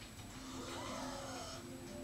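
Quiet background music of a TV commercial in a gap between narrated lines, heard from a television's speaker across a room, with faint gliding notes in the middle.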